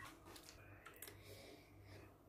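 Near silence: room tone with a few faint, tiny clicks.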